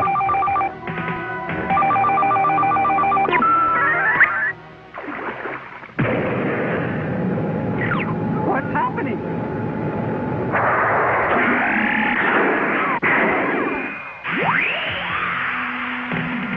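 Cartoon soundtrack: an electronic alert warbles in rapid bell-like pulses for about three seconds, then gives way to sweeping, whooshing sound effects over music.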